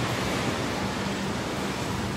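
Steady background noise of a large indoor market hall: an even hiss with a faint low hum.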